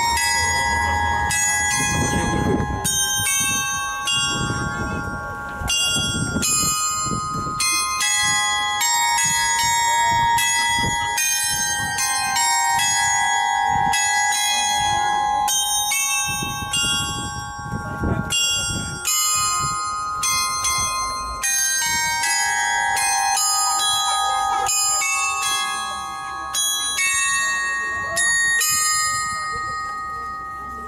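Large outdoor bell chime, a 'big music box' of metal bells hung on a frame, playing a tune: struck bell notes follow one after another, each ringing on under the next.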